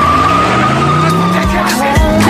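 Car tyres squealing in one long, wavering screech, with the engine revving up underneath. The squeal dies away about a second and a half in.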